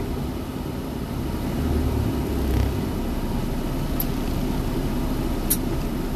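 Steady engine rumble heard from inside a vehicle cab in traffic, swelling briefly about two seconds in. Two faint ticks come later.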